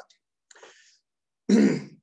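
A man clearing his throat once near the end, a short rough burst, after a faint breath about half a second in.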